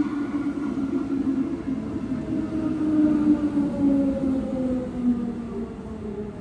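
Electric commuter train pulling into an underground station, its motor whine falling slowly and steadily in pitch as it brakes, over a rumble of wheels.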